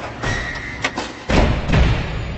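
Logo-reveal sound effects: a sharp hit just before a second in, then a deep thud about a second and a quarter in, the loudest sound here, which rings on and slowly fades.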